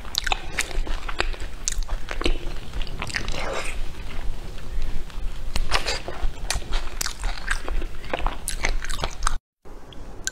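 Close-miked eating sounds: biting and chewing a Chinese blood sausage, with many wet mouth clicks and smacks in quick succession. A brief dead silence breaks in near the end.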